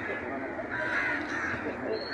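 Crows cawing faintly, several short calls over low outdoor background noise.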